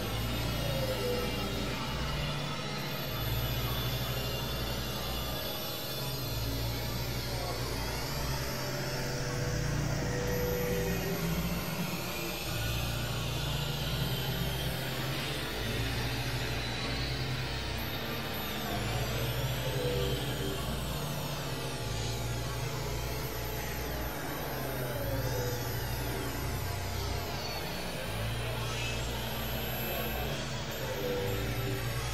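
Experimental electronic drone music from synthesizers. A low bass drone changes pitch every few seconds under dense layered sustained tones, while high pitch sweeps rise and fall across one another throughout.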